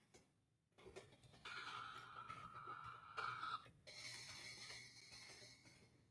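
Faint computer keyboard typing with light key clicks, under a faint whistle-like tone in two stretches, the second higher-pitched.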